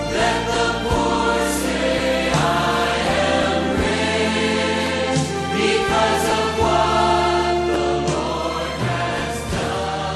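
Choral music: a choir singing over instrumental accompaniment, with the bass notes moving in steps every second or two.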